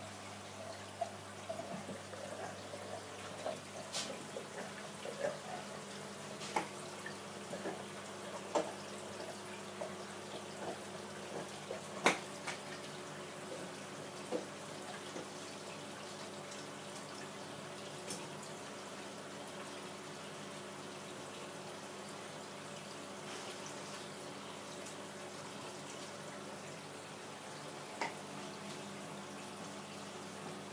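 Steady electrical hum of aquarium air pumps over running, dripping water from the linked tank system. Scattered sharp clicks and drips come through the first half, the loudest about twelve seconds in.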